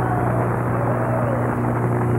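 Big band holding a steady chord, with one higher line slowly wavering over it.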